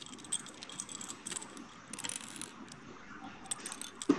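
Plastic Lego bricks clattering and clicking as they are rummaged through and pressed together: a stream of small, irregular clicks and rattles.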